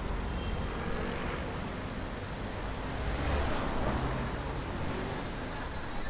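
City street traffic: cars driving past through an intersection, a steady wash of engine and tyre noise that swells about three seconds in as a car passes close by.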